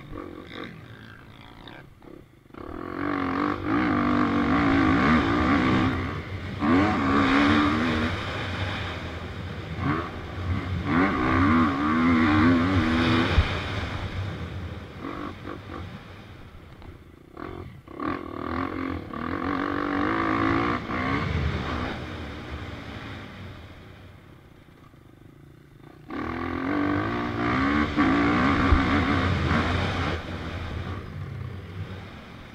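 KTM EXC-F 250 four-stroke single-cylinder dirt bike engine heard from the rider's onboard camera, revving hard through the gears. Its pitch climbs repeatedly under throttle, with short lulls where the rider shuts off, the longest near the end.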